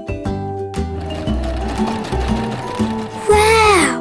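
Electric sewing machine running in a fast, regular whirring rattle, starting about a second in, over cheerful background music. Near the end comes a louder sound that slides down in pitch.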